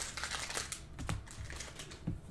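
Trading cards being handled and dealt onto stacks on a tabletop: a run of light clicks and slaps, with a louder knock about a second in.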